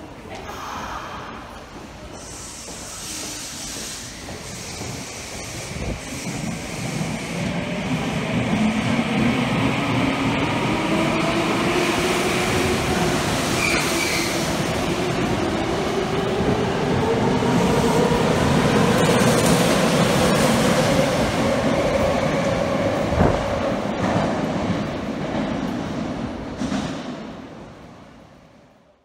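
Tokyo Metro 7000 series subway train pulling out of an underground station and accelerating past: its traction motors whine in a steadily rising pitch over the rumble of the wheels, with one sharp knock late on. The sound swells over the first several seconds and dies away near the end as the last cars leave.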